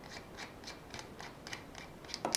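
Faint small clicks, evenly spaced at about four a second, as a cover on an ATN X-Sight II HD rifle scope's body is worked open by hand.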